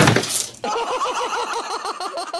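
A loud crash and clatter as a tall stack of boxes, pushed by a cat, topples over. It is followed about half a second in by a rapid run of short, high, pitched sounds, about seven a second.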